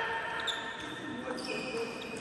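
Celluloid-type table tennis ball knocking off bats and the table during a rally, a few sharp clicks with hall echo.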